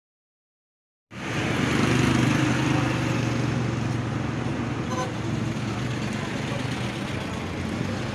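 Street traffic: a motor vehicle engine running close by with a steady low hum over road noise, starting about a second in, with a brief tone about five seconds in.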